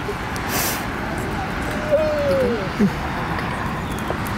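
Steady outdoor background noise, with a short hiss about half a second in and a brief off-microphone voice falling in pitch about two seconds in.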